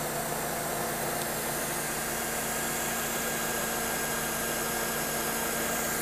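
Mercedes-Benz CLK (W208) running steadily at idle, an even, smooth buzz.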